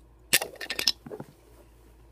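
Beyblade spinning-top parts clicking and clinking together as they are handled and taken apart: a quick run of sharp clicks about a third of a second in, then two fainter ones a moment later.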